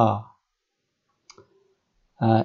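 A man's voice finishing a spoken letter name at the start, then a quick double click of a computer mouse about 1.3 seconds in.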